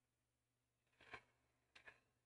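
Near silence: room tone, broken by two faint, brief sounds, one about a second in and a shorter one near the end.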